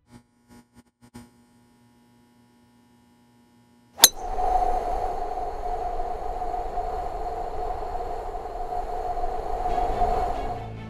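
Title-sequence sound effects: a few faint clicks, then a sharp hit about four seconds in that opens into a loud, steady rushing drone with a held mid-pitched tone.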